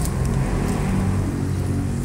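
A spatula stirring crushed pork chicharon into sisig in a metal wok, heard over a steady low rumble.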